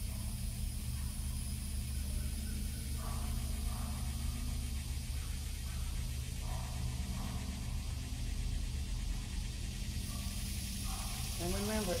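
A steady low mechanical hum from a running motor, with a few faint, distant voices.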